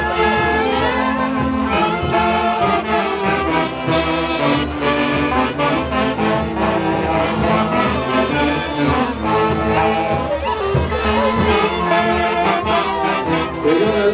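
Live orquesta típica from Peru's central highlands playing tunantada dance music, with saxophones carrying the melody over a steady beat.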